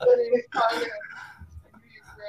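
A person's voice over a video call: a drawn-out vocal sound and mumbled, unclear speech in the first second, fading to faint fragments.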